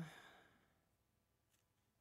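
The end of a man's drawn-out "um" trails off into a breathy exhale within the first half second, then near silence with one faint click about one and a half seconds in.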